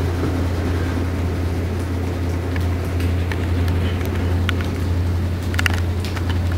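A steady low hum, with a few faint short clicks in the second half.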